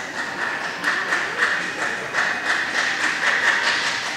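Luggage trolley wheels rattling over a hard tiled floor: a steady clatter with irregular clicks, about three a second, that starts and stops abruptly.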